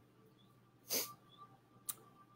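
A short, sharp breath drawn in through the nose about a second in, followed by a small click near the end.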